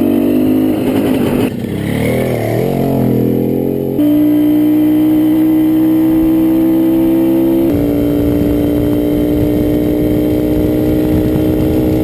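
Husqvarna MC 258A military motorcycle's two-stroke engine running under way. Its pitch wavers up and down for a couple of seconds near the start, then holds steady, shifting slightly lower about two-thirds of the way through.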